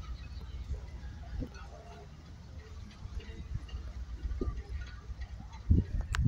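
Quiet outdoor background: a steady low rumble with faint, scattered distant sounds, and a brief thump near the end.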